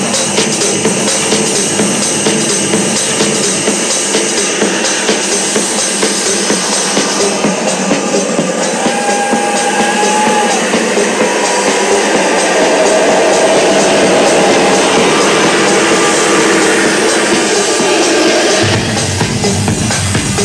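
Loud techno DJ set played over a club sound system, fast and driving, with the bass filtered out; the low end drops back in near the end.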